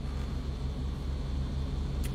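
Steady low rumble with a faint hiss inside a car cabin.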